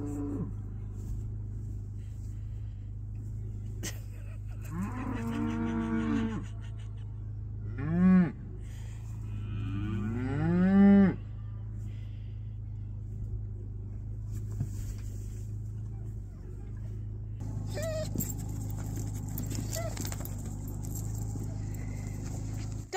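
Cattle mooing several times, each call rising then falling in pitch, the loudest two about eight and ten seconds in, over a steady low hum.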